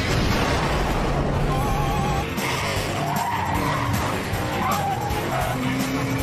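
Cartoon sound effects of a car speeding along, with engine noise and tyre squeals, under background music.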